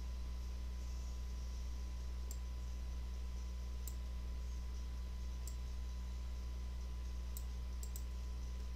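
Faint computer mouse clicks, about five spread through, over a steady low electrical hum.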